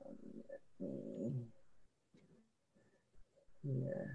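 A woman's drawn-out hesitation sounds, two low 'uh'/'mm' noises in the first second and a half, then a pause and a short 'yeah' near the end.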